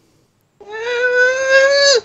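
A person's long, high-pitched drawn-out exclamation of awe, a held 'ooh' that starts about half a second in, rises slightly in pitch and drops off sharply at the end.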